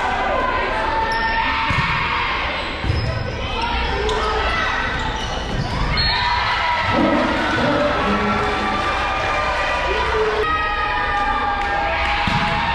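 A volleyball bouncing on a hardwood gym floor as a player gets ready to serve, under the steady chatter of spectators' voices in the gym.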